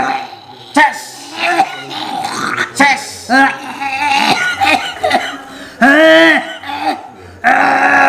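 A man belching loudly over and over, a string of long voiced belches and groans that rise and fall in pitch, the longest a little past the middle.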